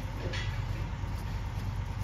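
Steady low hum and rumble of shop background noise, with no distinct loud event standing out.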